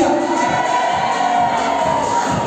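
Live pop show music: singers on microphones holding long notes over an amplified backing track, with crowd noise from the audience.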